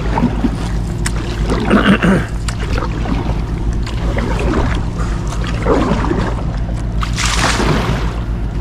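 Kayak paddle strokes through the water over a steady low hum, with a brighter splash about seven seconds in.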